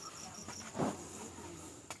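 Field crickets or similar night insects calling: a steady, thin, high-pitched trill, with a second insect chirping in short, evenly spaced pulses during the first second. A soft knock sounds just before one second in.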